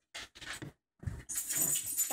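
A dog making three short, breathy sounds, then a jingling rattle that sets in about a second and a half in.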